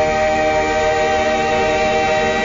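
A choir holding one loud, steady chord of several voices: the final held chord of the song.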